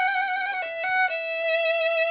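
Violin played with a bow that is being tried out: slow, sustained high notes with vibrato, the pitch stepping down a little about a second in. The player calls the bow's playing "so even".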